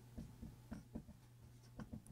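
Dry-erase marker writing on a whiteboard: a series of faint, short strokes as a word is written.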